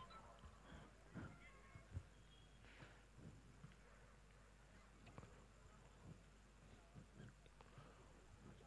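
Near silence: faint room tone on the commentary microphone with a steady low hum and a few very faint scattered ticks and brief distant sounds.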